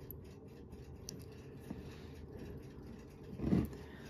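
Quiet workbench sounds: faint small clicks of fine steel tweezers working at a pocket watch's balance and hairspring over a low steady hum, with a brief louder bump about three and a half seconds in.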